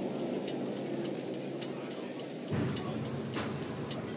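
Quiet background music with light, regular ticking percussion over sustained tones.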